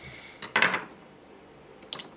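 Small cake-decorating tools being handled on a work board: a short clatter about half a second in, as a knife is set down, and a light click near the end.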